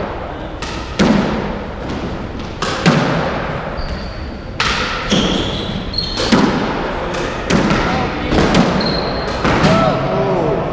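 Squash rally: a hard rubber squash ball being struck by racquets and hitting the court walls, about a dozen sharp impacts at uneven intervals, each echoing off the walls. A few short, high squeaks of court shoes on the wooden floor come between the shots.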